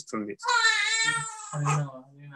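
A high-pitched, wavering vocal cry lasting about a second, with a man speaking briefly just before and after it.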